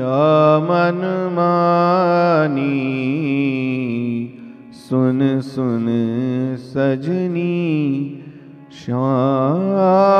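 A man's voice singing a devotional kirtan melody into a microphone, drawing out long, ornamented notes. The singing breaks off briefly about four and a half seconds in and again near eight and a half seconds, then carries on.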